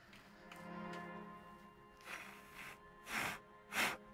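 Soft background music, with three short puffs of breath about two, three and nearly four seconds in: blowing on a freshly painted miniature to dry the paint.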